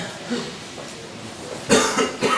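A person coughs once, sharply, near the end, after a few soft handling sounds.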